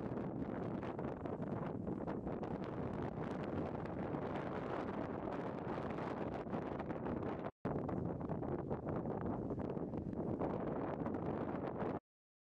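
Wind buffeting the microphone, a steady rushing noise, with a split-second gap about seven and a half seconds in.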